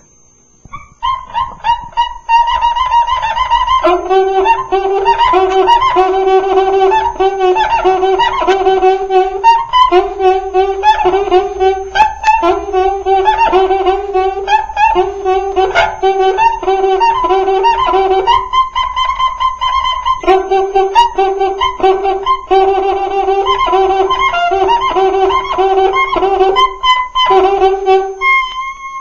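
Cuíca, the Brazilian samba friction drum, played solo in a steady samba rhythm. Its crying, pitched notes alternate between high and low as the fingers press on the drum head to change the pitch. Higher notes start about a second in, and a lower note joins about four seconds in.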